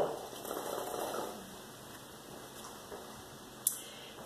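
Low room tone with a faint rustle in the first second or so, and one short sharp click near the end.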